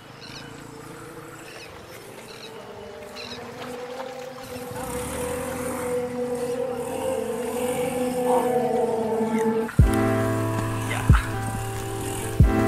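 Background music: a held tone swells steadily louder, then cuts off about ten seconds in and a beat with a heavy kick drum takes over.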